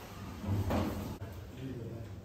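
Stainless-steel toilet stall door and latch being handled, with one brief clatter about half a second in.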